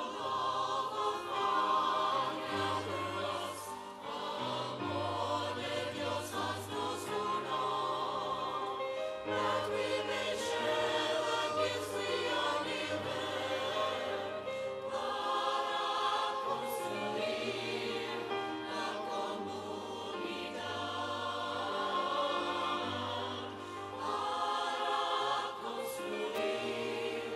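A church choir singing with instrumental accompaniment over low, held bass notes that change every couple of seconds.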